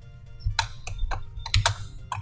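Computer keyboard keys clicking, several quick keystrokes from about half a second in to near the end, over soft background music.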